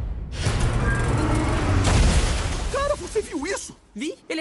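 Film trailer sound effects: a sudden heavy crash with shattering and a low rumble, hit again a little before two seconds in. A voice calls out briefly near the end.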